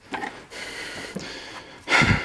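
A long breath out close to the microphone, then a sudden bump near the end as the handheld camera is moved.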